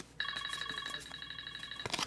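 Electronic telephone ring: a rapid warbling trill of several steady high tones together, lasting about a second and a half and then cutting off.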